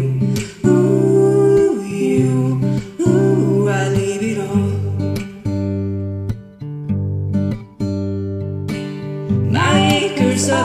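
Karaoke backing track of a pop song: strummed acoustic guitar chords over a bass line, with a new chord struck about every second, in an instrumental gap between sung lines.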